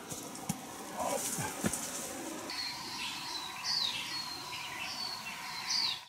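A bird calling repeatedly from about two and a half seconds in: high, held whistles, some ending in a quick downward slur. Before it come a few knocks and scuffs of boots climbing a steep dirt trail.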